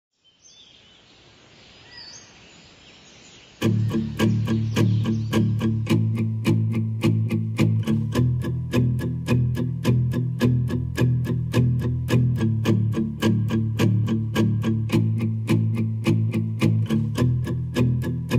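Faint background noise, then about three and a half seconds in, background music starts: a guitar strummed in a steady, quick rhythm of about three to four strums a second, the instrumental intro before the singing begins.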